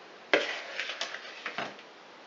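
A metal spoon scraping and knocking against a plastic mixing bowl while scooping out thick chocolate batter: a sharp knock about a third of a second in, then several shorter scrapes.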